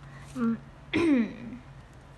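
A woman's brief non-word vocal sounds: a short hum about half a second in, then a louder one falling in pitch about a second in. A faint steady low hum runs underneath.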